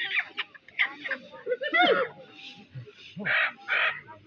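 Live chickens squawking in several short outbursts among people's voices.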